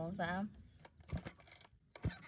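A few light clicks and one soft thump as the controls and engine of a petrol brush cutter are handled, spaced irregularly after a brief spoken word.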